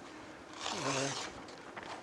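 A man's short, breathy vocal sound into a microphone, lasting about half a second a little before the one-second mark, with a low voice under the breath noise.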